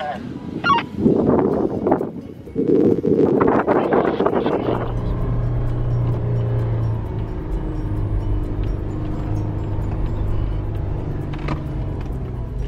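A 4x4's engine running with a steady low drone, heard from inside the cabin while it drives across sand dunes. The first few seconds hold louder, uneven bursts of sound before the drone settles in.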